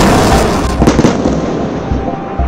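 Loud rumbling of explosions, with two sharp cracks about a second in; after them the rumble dies down.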